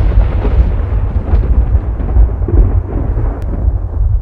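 A loud, deep rumble like rolling thunder, heaviest in the bass, swelling unevenly without a break.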